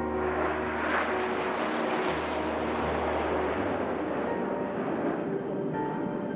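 Jet noise from a nine-aircraft formation of Red Arrows BAE Hawk jets flying overhead during an aerobatic display: a dense, steady roar that cuts in suddenly and thins out near the end.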